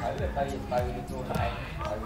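People talking over a steady low thumping beat, about two thuds a second.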